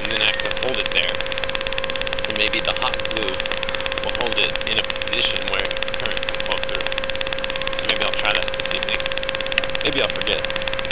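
Steady hiss with a constant hum-like tone, the noise of an analog FPV video link's audio channel. Faint, indistinct talking comes and goes over it.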